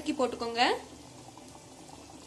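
A woman's voice briefly, then a pot of chana masala simmering faintly with soft bubbling and crackling.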